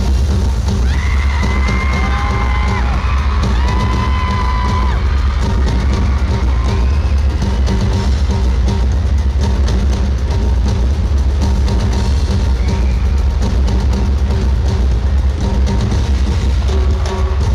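Drum kit played live over a loud backing track with heavy, steady bass. In the first few seconds, high-pitched screams from the audience ride over the music.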